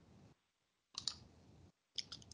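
Faint background noise of a video-call audio line that drops out to dead silence in places, with a short cluster of sharp clicks about a second in and a single click at the end.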